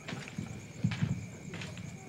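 Footsteps and a few irregular knocks on a stage floor, as performers move about.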